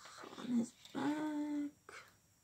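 A short voiced sound about half a second in, then one held, steady-pitched vocal sound lasting under a second.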